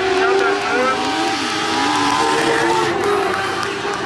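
Several dirt-track race car engines running on the track, their pitch rising and falling as the cars pass, with voices over them.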